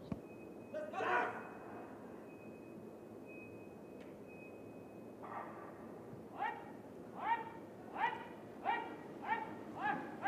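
Short, rhythmic shouts of encouragement repeating about once every three-quarters of a second, starting about six seconds in as a team pursuit squad of track cyclists pulls away from the start. Before them there is only a faint steady high tone.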